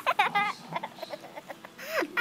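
A young woman giggling: a quick run of short, high-pitched laughs in the first half second, then softer, scattered sounds.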